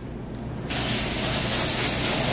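Aerosol spray paint can spraying in one steady hiss, starting just under a second in, as paint is sprayed through a paper stencil onto a cardboard box.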